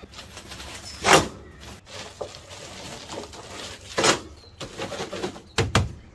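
Brief handling knocks and rustles as fabric sandbag weights are hooked onto a metal animatronic base: one about a second in, one near four seconds, and two close together near the end.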